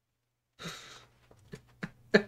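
A man's breathy exhale, then a few short quick puffs of breath: a quiet chuckle.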